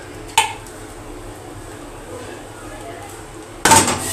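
Steel utensils against a kadhai as boiled besan gatte are tipped from a steel bowl into curry gravy: a sharp metallic clink with a short ring about a third of a second in, then a louder clatter of metal near the end.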